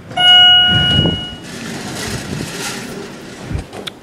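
A loud, steady, single-pitched tone lasting about a second and a half, followed by a steady rushing noise with a couple of sharp knocks near the end.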